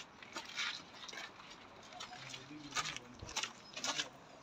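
Footsteps scuffing on a sandy dirt path, irregular, about six steps. A brief, faint, low-pitched call comes a little past two seconds in.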